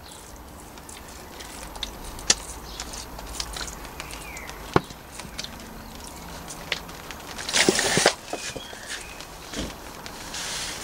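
Water sprinkling from an upturned plastic bottle fitted with a screw-on watering rose onto compost in small seed pots, with scattered light plastic clicks. A brief louder rustle comes about three-quarters of the way through.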